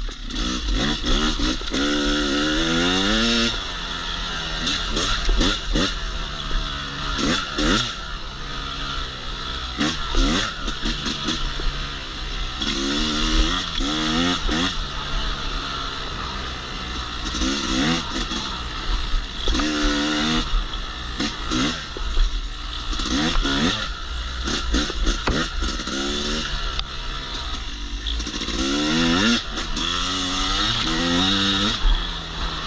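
Yamaha YZ250X two-stroke single-cylinder dirt bike engine being ridden, its pitch rising again and again as the throttle is opened and falling back between pulls. A steady rush of noise and scattered knocks run underneath.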